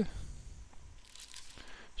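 Sheets of toner transfer paper and their card packet rustling and crinkling as they are handled, in soft irregular bursts.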